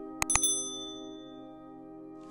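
A quick mouse-click sound effect, then a bright bell ding that rings out and fades over about a second: the notification-bell sound of a subscribe-button animation. Underneath it, background music holds a steady chord.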